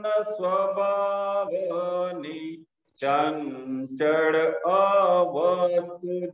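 A man singing a slow Gujarati devotional bhajan in a chant-like melody with long held notes, pausing for breath about two and a half seconds in.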